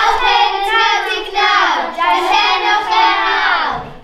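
Children singing together in high voices, long held notes sliding down in pitch; the singing breaks off just before the end.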